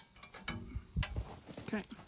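Scattered knocks and clicks of metal being handled, about half a dozen: a loose chrome car bumper is gripped and shifted while a reciprocating saw, not running, is set against its bracket.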